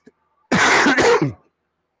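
A man coughing, a harsh double cough about half a second in.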